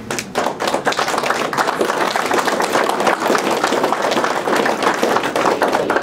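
Audience applauding: many hands clapping in a dense, steady patter that starts suddenly.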